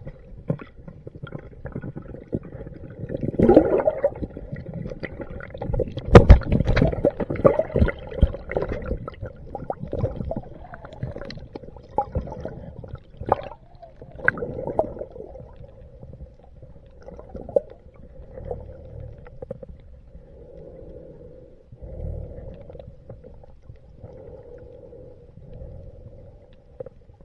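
Muffled underwater sound from a camera in a waterproof housing: water swirling and gurgling with scattered knocks and bumps on the housing, loudest about six seconds in.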